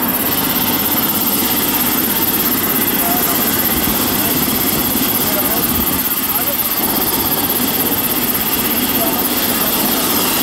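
A helicopter running close by: a loud, steady rush of turbine and rotor noise, with men's voices talking underneath it.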